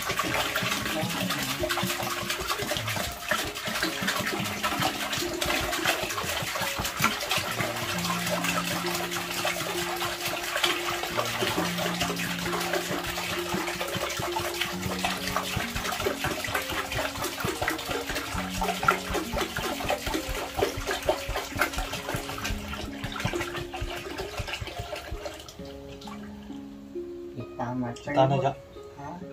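Water pouring in a steady rush from a 20-litre plastic jerrycan into a plastic bin, fading out near the end, over background music with held notes.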